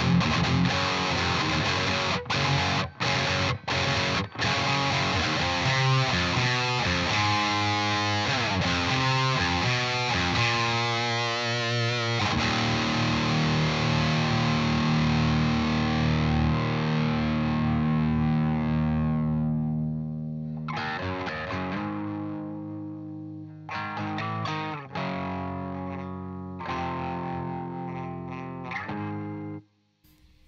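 Heavily distorted electric guitar through a Blackstar amplifier, playing a heavy metal riff with several sudden muted stops in the first few seconds. A long chord rings out and slowly fades a little after the middle, then choppy chords with short gaps follow and cut off sharply near the end.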